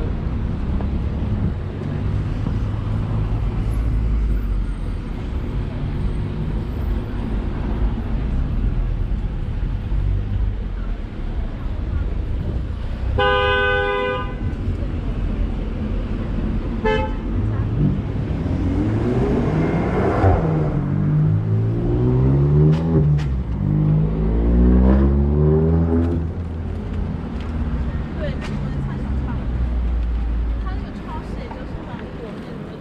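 Busy city street traffic: a steady low rumble of passing vehicles, a car horn honking about 13 seconds in and a short toot about three seconds later. After that a vehicle engine accelerates, its pitch climbing and dropping several times, as through gear changes.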